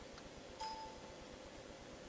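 A single short electronic beep, lasting about half a second and starting a little over half a second in with a click, over a steady low hum.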